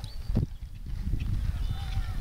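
Uneven low rumble of wind buffeting the microphone outdoors, with a few faint high whistling tones near the end.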